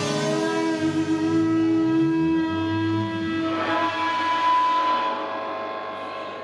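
Live rock band in a quieter passage without drums: long held notes ring over a bass line that moves beneath them, slowly fading toward the end.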